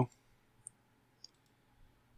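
Two faint computer mouse clicks, about half a second apart, against near silence.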